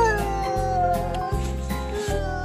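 A young child's drawn-out vocal sound that slides down in pitch and holds, over background music with a steady beat.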